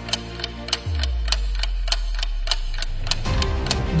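Countdown-timer sound effect: a clock ticking about four times a second over soft background music. A deep bass hit comes in about a second in and rings on for around two seconds.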